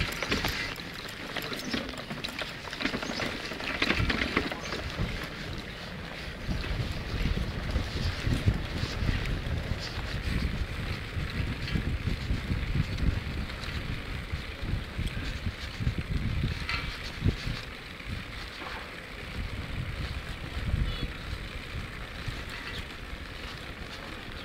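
Wind buffeting the microphone: irregular low rumbling gusts that rise and fall throughout, with a few brief knocks.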